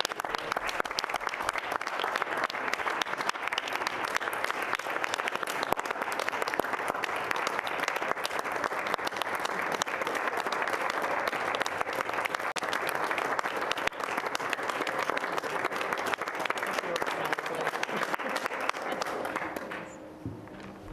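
A roomful of people applauding steadily, the clapping stopping sharply near the end.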